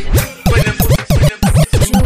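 DJ scratching in a reggaetón mix, with rapid back-and-forth pitch sweeps about five times a second over the beat. It marks a transition from a rapped track into the next song.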